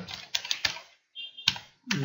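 Typing on a computer keyboard: a quick run of keystrokes, a short pause, then one sharper keystroke near the end.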